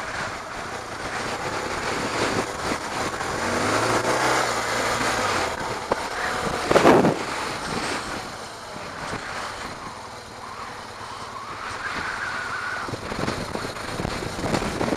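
Dual-sport motorcycle engine running on a gravel track, its pitch rising around four seconds in as the bike speeds up, with wind buffeting the camera microphone. A brief loud burst of wind noise about seven seconds in is the loudest moment.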